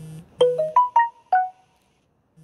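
Phone ringtone: a short electronic melody of about five separate ringing notes that jump up and down in pitch, starting about half a second in, after a brief low buzz.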